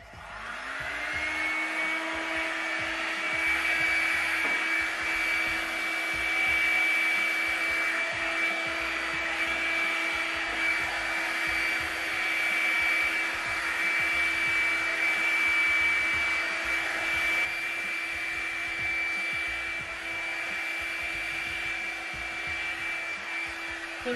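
Revlon One-Step hair dryer brush switched on, its motor spinning up with a rising whine over the first second, then running steadily with a high whine over the rush of air as it is drawn through the hair.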